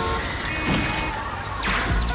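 Film trailer soundtrack: music mixed with street and car noise in the aftermath of a crash, with a few steady beeping tones near the start and a swelling whoosh just before the end.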